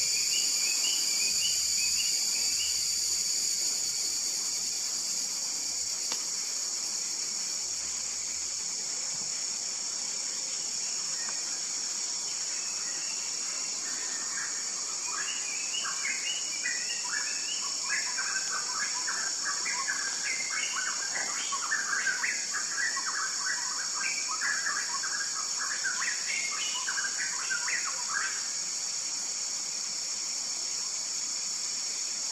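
Yellow-bellied gerygone singing a long run of quick, short high notes through the second half, over a steady high-pitched insect drone.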